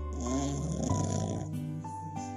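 French bulldog puppy snoring in its sleep, a rough snore in about the first second, over background music with held notes.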